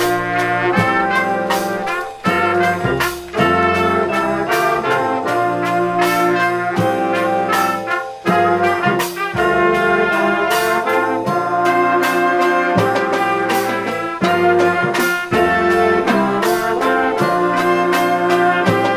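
A high school wind band playing: trumpets, trombones and saxophones holding full chords over a steady drum beat.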